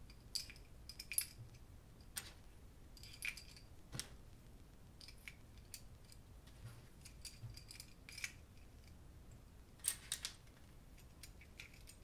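Light, scattered clicks and taps of miniature Copic marker replicas being slotted into a small clear acrylic case, with a few louder clicks about four seconds in and near the end.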